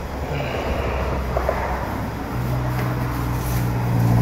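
A steady low mechanical hum, with a second deeper steady tone coming in about halfway through.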